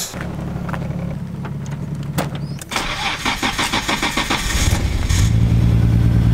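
Nissan Skyline R33 GT-R's twin-turbo straight-six being started: the starter cranks for about two seconds, starting about three seconds in, then the engine catches and settles into a loud, steady idle. A steady low hum runs before the cranking.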